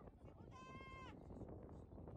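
A faint, distant high-pitched held call from a voice, about half a second long, starting about half a second in, over low rumbling outdoor noise.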